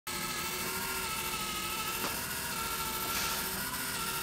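Small geared DC motor running steadily as it drives a camera slider's carriage along its rail through a roller on the motor shaft: an even whine at several fixed pitches. A faint click comes about two seconds in.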